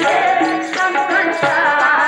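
Sikh shabad kirtan: a woman singing a wavering, gliding melody over the held notes of a harmonium, with tabla strokes beneath.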